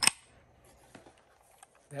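A single sharp click from the electronic door lock's hardware as the lever handle is fitted onto it, followed by near quiet with a couple of faint handling ticks.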